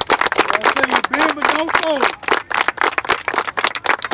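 A group of people clapping fast and unevenly together, with raised voices shouting and whooping over the applause.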